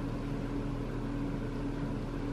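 Steady low hum of room tone, with a few held low tones and no distinct events.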